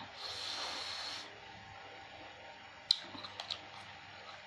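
Eating sounds up close: a slurp lasting about a second as a spoonful of asinan sayur broth is taken from the spoon, then one sharp click and a few smaller ones about three seconds in, from chewing or the spoon in the plastic bowl.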